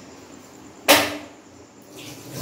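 A single sharp metallic clank about a second in, with a short ring: a steel spoon knocking against a stainless steel mixing bowl.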